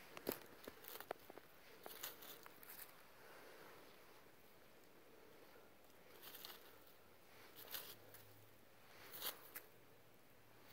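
Near silence with a few faint, scattered rustles and crunches as snowy fir boughs covering a cage trap are poked and moved aside with a stick.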